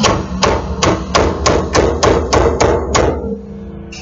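Ball peen hammer striking a lug stud, capped with a lug nut, in a wheel hub held in a bench vise: about ten hard metal-on-metal blows, roughly three a second. The blows stop about three seconds in and the hub rings on briefly, the stud driven out of the hub.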